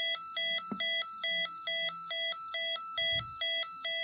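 Snap Circuits alarm IC sounding through the kit's small speaker as an electronic two-tone siren. It alternates evenly between a low and a high tone about three times a second and sounds high-pitched and tinny.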